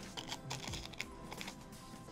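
Crinkling crackles of a thin sleeve holding a glazed polymer clay sample as it is handled, a quick run of small clicks over about a second and a half, over background music.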